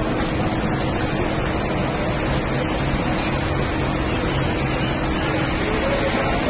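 Steady droning road-tunnel noise with a constant low hum, from running vehicles and tunnel ventilation, echoing off the tunnel walls.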